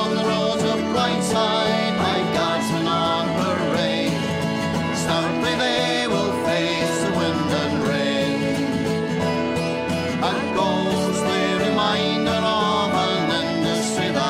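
Folk band playing an instrumental break without singing: acoustic guitar, banjo, whistle and hammered dulcimer.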